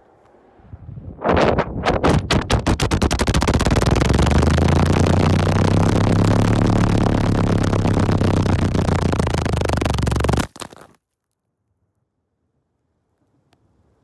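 Wind rushing over the microphone of an iPhone X in free fall from a very tall bridge: rapid flapping pulses that quicken as it tumbles, merging into a loud, steady roar with a low rumble, which stops abruptly about ten and a half seconds in.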